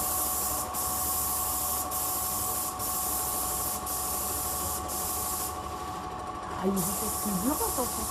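Hose-fed spray gun on an extension pole hissing as it sprays coating onto a wall, with short breaks where the trigger is let go. The spray stops about halfway through and starts again near the end, over a steady machine hum.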